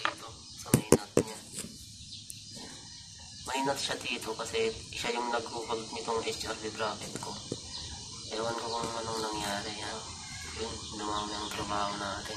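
Indistinct voices talking in the background, with a few sharp clicks about a second in.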